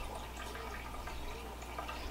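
Faint steady room tone from a running saltwater reef aquarium: a low hum with soft trickling, splashing water.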